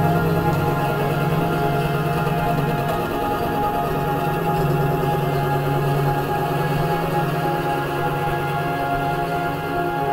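Experimental drone music made of many sustained, layered tones. A low drone fades about three seconds in and swells back a second later.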